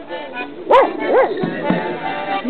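A dog barks twice, about three-quarters of a second and a second and a quarter in, over an accordion playing a tune.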